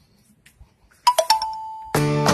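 Quiet at first, then about a second in a few quick bell-like chime notes, the last one ringing on and slowly fading.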